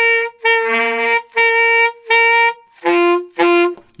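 Saxophone played with too much mouthpiece in the mouth, too far up on the reed, giving a honky, quacky, nasty-sounding tone. Six short notes: the first four on one pitch, the last two lower.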